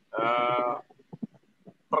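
A man's held hesitation vowel, a steady-pitched "ehh" of about three quarters of a second, between phrases of his speech, followed by a few faint clicks.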